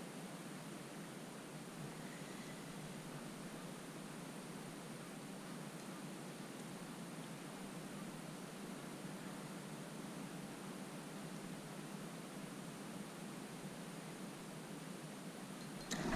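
Faint, steady background hiss with a low hum and no distinct sound events: the quiet ambience of open water picked up by the camera's microphone.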